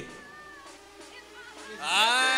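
Low background room sound, then near the end a single voice-like call that rises sharply in pitch and holds as a long drawn-out shout.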